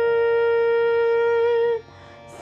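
A woman's singing voice holding one long, steady note in a Carnatic-style song, which stops shortly before the end.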